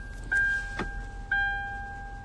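A car's electronic warning chime dinging twice, about a second apart, each ding ringing on before it fades, with a short click between them.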